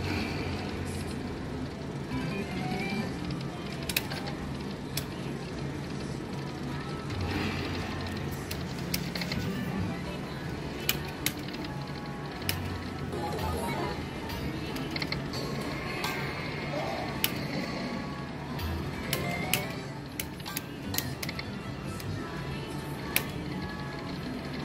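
Video slot machine playing its music and spin sound effects while the reels spin, over the steady background din of a casino floor. Many scattered sharp clicks, more of them in the second half.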